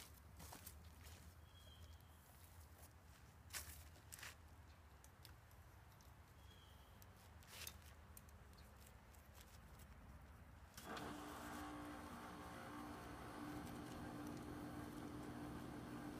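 Near silence with a few faint knocks as a lightweight PVC pipe frame is handled and set over a garden bin. About eleven seconds in, a steady low hum with a faint tone sets in and carries on.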